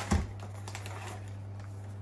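Light rustling and crackling of shredded packing filler as hands dig through it inside a cardboard box, with a single low thump just after it begins. A steady low hum runs underneath.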